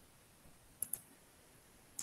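Two quick, faint clicks about a second in, close together, against near silence.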